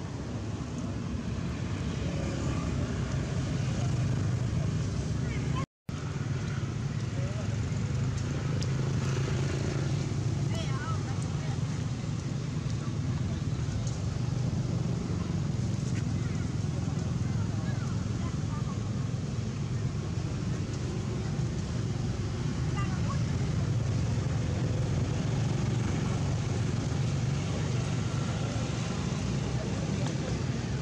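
Steady low outdoor background rumble with faint, indistinct voices. The sound cuts out completely for a moment about six seconds in.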